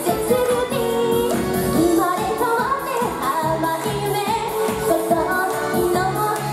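A woman singing an upbeat pop song into a handheld microphone over dance-pop music with a steady beat.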